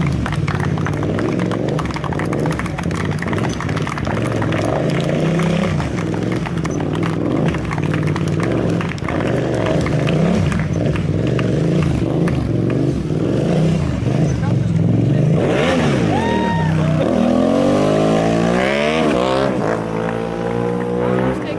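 Stunt motorcycle's engine held at steady revs with small throttle changes while the rider keeps it up on one wheel. Near the end it is revved up and down several times.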